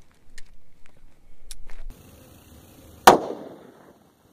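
A single shot from a Smith & Wesson Model 69 .44 Magnum revolver about three seconds in, with a short ringing echo trailing off after it. A few faint clicks come before it.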